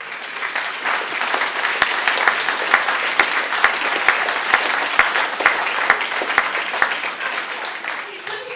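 Audience applauding: a dense patter of many hands clapping that starts abruptly, holds steady and thins out near the end.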